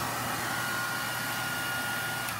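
Hair dryer running steadily, an even rush of air with a thin motor whine joining about half a second in, blown over freshly poured epoxy resin to make cells open up in it.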